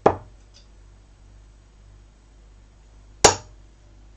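Two Bulls Max Hopp 24 g steel-tip darts striking a dartboard, one just after the start and one about three seconds later, each a sharp thud that dies away quickly.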